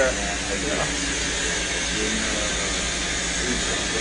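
Steady hiss of cold nitrogen gas flowing through a whole-body cryotherapy cabin, with faint voices underneath.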